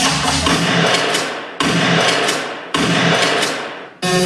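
Three sudden loud bursts of rushing noise, each fading away over about a second, played through a dance hall's sound system in a break between beat-driven dance tracks. Under the first burst the bass beat cuts out about half a second in.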